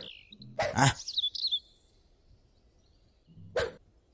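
A cartoon character's short cry, "Ah", about a second in, trailing into a thin high tone that wavers and falls. More than a second of near silence follows, then a brief low vocal sound near the end.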